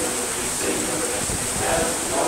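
Men's barbershop chorus singing in close harmony, the voices held on sustained chords.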